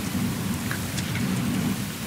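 A steady, even hiss of room noise picked up by the courtroom microphones, with no clicks or changes.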